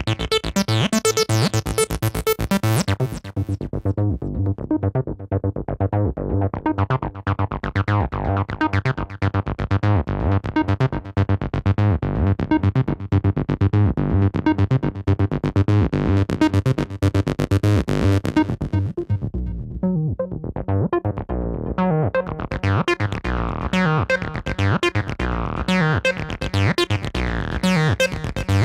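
Nord Lead 4 synthesizer playing a fast, repeating squelchy bassline through its TB-style diode ladder filter emulation. The filter knobs are swept by hand, so the sound turns bright, then dull, then bright again several times: bright at the start, dull a few seconds in, bright again in the middle, dull once more, and bright toward the end.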